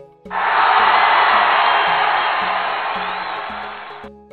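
Background music with a regular beat, overlaid about a third of a second in by a loud crowd-cheering sound effect that slowly fades and cuts off suddenly at the end.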